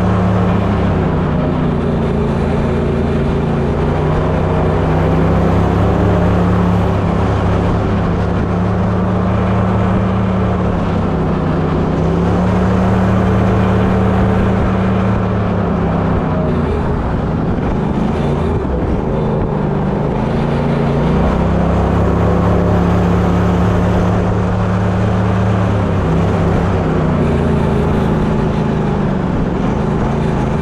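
Gator-Tail 40 XD Pro surface-drive mud motor running under way, its engine note dipping and rising again several times.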